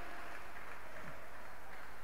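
A pause in speech: only a steady faint hiss with a low hum from the room and the sound system.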